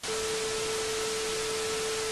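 Television static hiss with a steady single test tone over it, used as a glitch transition effect over a colour-bar test pattern.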